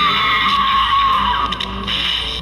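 Halloween light switch lever prop playing its electronic sound effect after its handle is flipped: a whining tone that slowly falls in pitch over a steady hiss.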